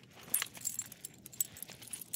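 A small dog chewing treats taken from a hand, with a run of quick, bright jingling clicks starting about a third of a second in.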